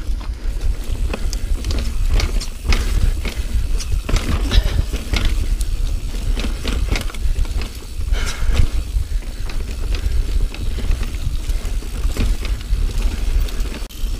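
Mountain bike, a Niner Jet 9 RDO, ridden fast over dirt singletrack. Wind buffets the microphone with a steady low rumble, the tyres roll over the dirt, and the bike rattles and clicks over bumps.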